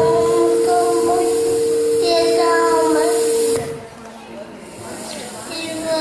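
Voices over a stage microphone and PA, with a steady held tone under them. About three and a half seconds in, the tone stops and the sound drops much quieter, with fainter voices after.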